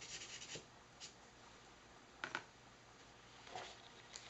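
Faint scratching of a blender pen's brush tip stroking across watercolor paper, a quick run of short strokes in the first half-second, then a few light taps and rustles.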